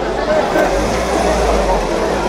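People chattering along a street while a car drives by, its low rumble coming in about half a second in and fading near the end.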